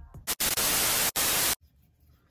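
Edited-in TV-static white-noise sound effect marking a cut: a hiss of a little over a second, broken once by a brief dropout, that cuts off suddenly.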